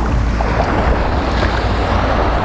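Steady wind noise on the microphone over small waves washing onto a sandy shore.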